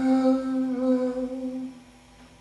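A man humming one long held note, slightly wavering, over a guitar chord left ringing; the note fades out near the end.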